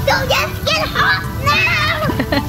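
Young children's high-pitched shouts and squeals, with background music underneath.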